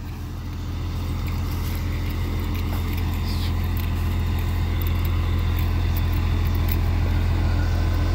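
Volkswagen truck's diesel engine running steadily to drive the Argos munck crane's hydraulics, a low drone that grows gradually louder as the crane takes up a concrete pillar.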